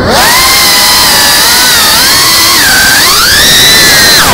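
Geprc CineLog 35 FPV drone's brushless motors and ducted propellers, loud with throttle: a whine with several pitches over a rush of prop noise. The whine rises right at the start, dips briefly a little past halfway, then climbs again and holds high.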